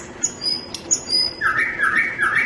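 Recorded thrush nightingale song played back: a few short, high whistled notes, then about a second and a half in, a run of repeated lower notes.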